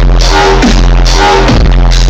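A dubstep DJ set played very loud over a club sound system, with heavy sub-bass under short pitched synth notes that repeat about twice a second.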